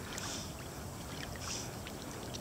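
Quiet sloshing and lapping of water at the surface from swimming, heard close to the water, over a steady low rumble.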